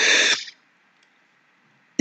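A short, breathy burst of breath from the man into a close microphone, about half a second long, followed by near silence.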